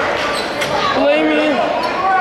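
A basketball being dribbled on a hardwood gym floor, with voices calling out in the gym; one voice stands out about a second in.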